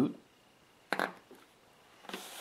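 A rubber spark plug boot being pushed down onto the spark plug of a motorcycle V-twin, with one short click about a second in.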